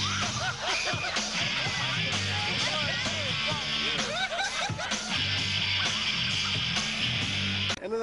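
Live rock band playing, with singing over bass, drums and a wash of cymbals; it cuts off abruptly just before the end.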